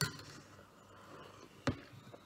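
Soft sipping and blowing as hot drinking chocolate is tasted from a ceramic mug and a metal spoon, with one sharp click near the end.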